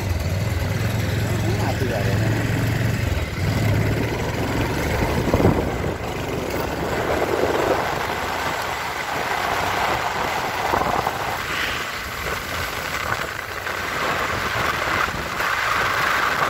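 Vehicle engine and road noise while moving along a street: a low steady engine hum for the first few seconds, then a continuous rush of road and traffic noise.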